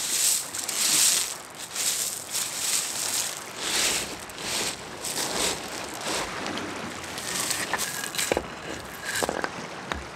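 Small beach pebbles crunching and rattling as they are scraped aside by hand, in swells about once a second, followed by a few light knocks of stone on stone near the end.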